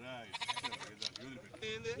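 Sheep bleating twice, wavering calls, amid a crowd's voices.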